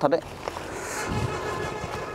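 Fabric rustling as a jacket is handled close to a clip-on microphone, a steady rustle after a brief word.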